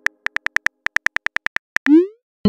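Phone keyboard tap clicks in a quick, even run, about ten a second, as a text message is typed. Near the end comes a short rising swoosh as the message is sent.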